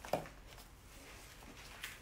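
Quiet room tone, with one brief short sound just after the start and a faint tick near the end.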